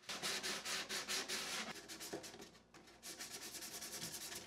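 Sanding sponge rubbed by hand over a plywood-and-pine board in quick back-and-forth strokes, with a brief pause a little under three seconds in.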